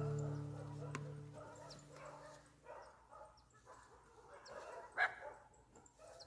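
Guitar music fading out over the first couple of seconds, then faint outdoor quiet with a few short, distant dog barks, the loudest about five seconds in.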